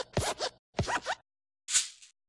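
Sound effects of an animated YouTube-logo intro: short scratchy bursts with quick rising squeaks in them, three in quick succession, then a brief high hiss near the end.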